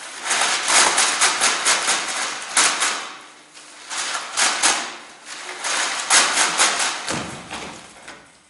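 Many sheets of paper rustling and flapping at once, shaken by a group of people, with sharp crackles and several swelling waves.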